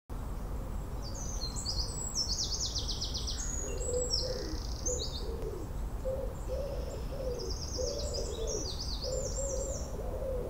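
Garden birdsong: a small songbird sings quick, high runs of falling notes in phrases, with a lower cooing call joining in from about four seconds in.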